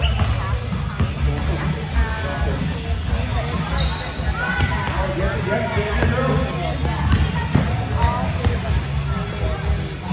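Basketball bouncing repeatedly on a hardwood gym floor as players dribble and pass.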